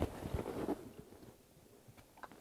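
Faint handling noise, soft rustling with a sharp click at the start and a few light knocks, dying away to near silence about halfway through.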